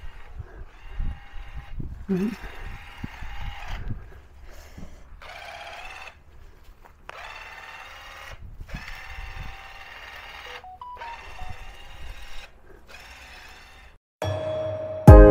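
A small motorised cutting tool buzzing in repeated bursts of about a second with short pauses between them, as overgrown shrubs are cut back.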